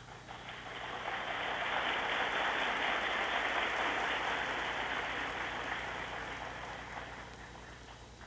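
Large audience applauding, building over the first second or two and then slowly dying away.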